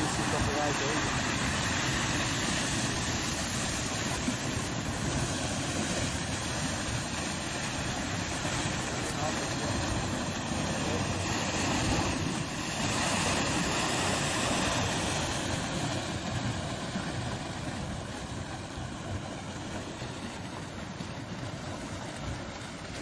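Muddy flash floodwater rushing across a valley floor: a continuous loud wash of water, easing slightly near the end.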